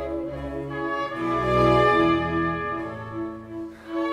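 Opera orchestra playing sustained chords that swell and then fade shortly before the end. A mezzo-soprano's held, wavering note ends about half a second in.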